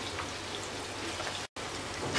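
Prawns and onions sizzling in hot oil in a frying pan, a steady crackling hiss that breaks off for an instant about one and a half seconds in.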